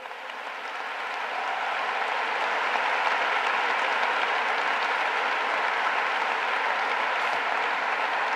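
Audience applauding, building up over the first couple of seconds and then holding steady.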